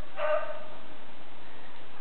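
A dog gives a single drawn-out whining call shortly after the start, fading away within about half a second, over a steady hiss.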